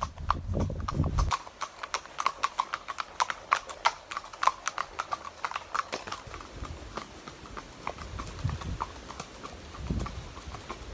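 Two horses' hooves clip-clopping on a wet paved lane, a quick, irregular run of hoof strikes. For about the first second a low rumble of wind on the microphone sits under the hoofbeats, then cuts off.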